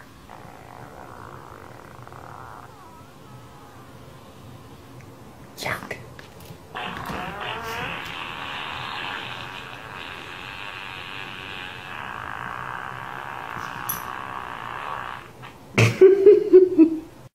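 Electronic sound playing from a tablet on the floor as a pug puppy noses at its screen: a faint sound for the first couple of seconds, a knock just before six seconds, then a louder, wavering sound from about seven seconds in that cuts off suddenly near the end.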